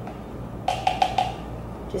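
A small plastic measuring scoop is tapped about five times in quick succession against a plastic shaker cup to knock the powder off, a brief run of hollow clicks with a pitched ring, about a second in.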